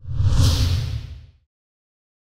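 A whoosh transition sound effect with a deep rumble under it, starting suddenly and fading out after about a second and a half.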